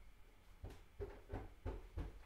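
A series of faint taps or knocks at about three a second, starting under a second in.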